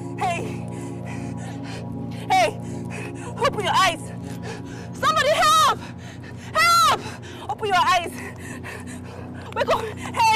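A person gives a series of about seven short, strained cries and gasps that rise and fall in pitch, the loudest about five and seven seconds in. Underneath them runs a held film-score music bed.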